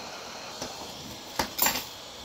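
Hot air rework gun blowing a steady hiss onto a small circuit board, heating it at about 340 degrees to reflow the solder. About one and a half seconds in there is a sharp click and a short rustle.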